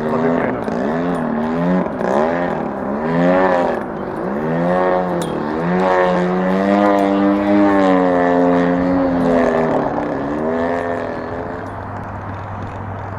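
Hangar 9 Extra 300X radio-control aerobatic plane's GP-123 engine and propeller in flight. The pitch rises and falls quickly with throttle through the manoeuvres, then holds a steady high note for a few seconds before dropping away near the end.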